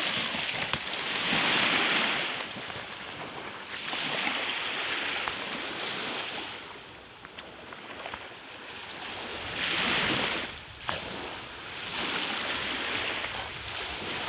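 Small sea waves washing in at the shoreline, the rush swelling and fading every few seconds, with some wind on the microphone.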